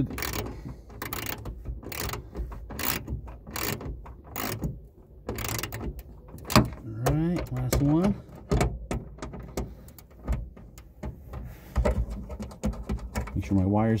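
Hand ratchet clicking in short irregular runs as bolts are snugged down on a plastic speaker bracket.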